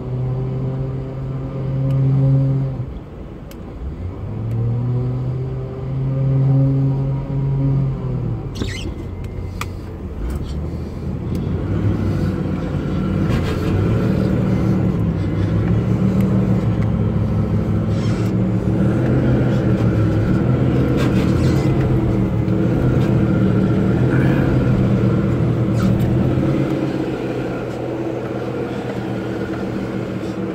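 4x4 engine revving twice, rising and falling, in the first eight seconds, then running hard and steady under load for the rest, during a tow recovery of a Jeep Wrangler stuck in mud and snow.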